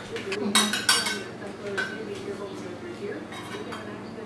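Kitchen utensils clinking against dishes and containers at the counter: a few sharp metallic clinks with a brief ring, about half a second in, about a second in, near two seconds, and a small cluster near the end.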